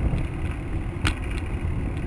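Steady road-traffic noise of cars passing on the adjacent road, mostly a low rumble, with one sharp click about a second in.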